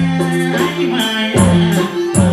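Live Nepali folk song: a man singing over hand drums, held chords and a high rattling percussion keeping a steady beat.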